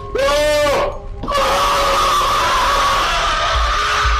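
A person screaming from the prank clip: a short yell that rises and falls, then, after a brief break, one long held scream.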